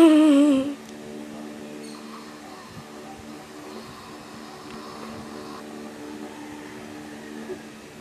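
A pressed Donkey toy figure's sound chip gives a short, loud, wavering voice-like sound that slides down in pitch during the first second. A steady low hum carries on under it.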